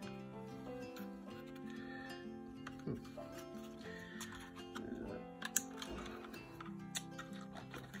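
Quiet background music of held chords that change every second or so, with a few light plastic clicks from the toy drone being picked up and handled.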